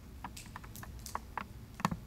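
A quick, irregular run of light clicks and taps, with the loudest near the end.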